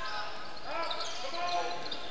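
Basketball being dribbled on a hardwood gym floor, with short squeaks of sneakers on the court.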